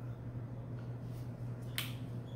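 Flip-top cap of a squeeze bottle of glitter craft paint snapping shut: a single sharp click near the end, over a steady low hum.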